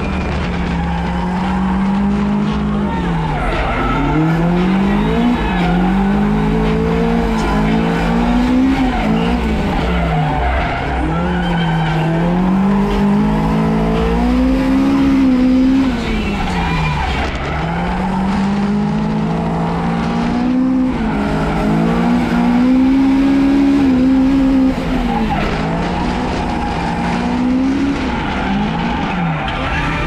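Toyota AE86 Corolla's engine revving up and down in repeated swells every few seconds as the car drifts, with the tyres sliding.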